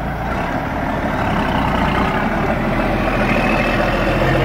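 Diesel engine of a loaded Kenworth log truck running and slowly getting louder as the truck starts to roll, with a faint rising whine near the end.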